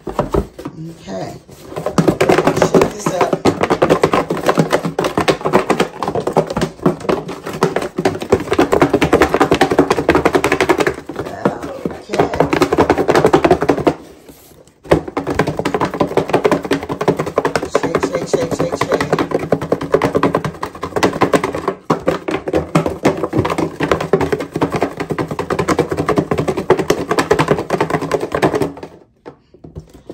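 A cardboard shoebox holding a few folded paper slips being shaken to mix them: quick continual rattling and knocking in two long spells, with a brief pause about halfway through.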